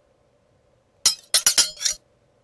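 Title-animation sound effect: a quick run of about five sharp, ringing clinks, like glass or metal struck, starting about a second in and stopping abruptly.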